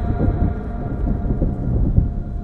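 Deep rumbling swell with a few held low notes sounding steadily above it, a dramatic trailer-soundtrack effect, building in loudness.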